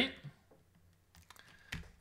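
A few scattered keystrokes on a computer keyboard, the loudest near the end.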